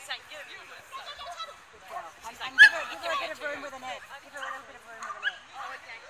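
People's voices talking and calling, with one short, loud sound about two and a half seconds in.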